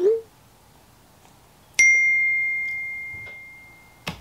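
A single bell-like ding a little under two seconds in, a phone's text-message notification tone, that rings on one clear pitch and fades away over about two seconds. Just before it, right at the start, a short vocal sound.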